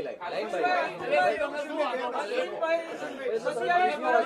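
Indistinct chatter: several people talking over one another, with no clear single speaker.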